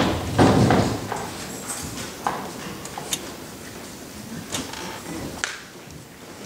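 A dull thump about half a second in, then scattered knocks and clicks: stage noise from actors handling a cardboard prop coffin and walking on the stage floor.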